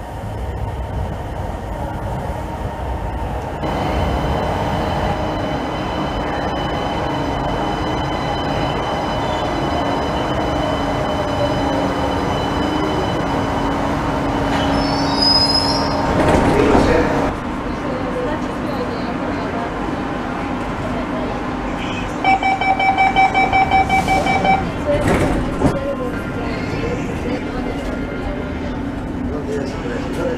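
Electric metro train (unit 114.01) running into an underground station, growing louder about three seconds in, with a high squeal near its loudest point as it brakes to a stop. Later, a rapid electronic beeping for about two seconds, typical of a door-closing warning.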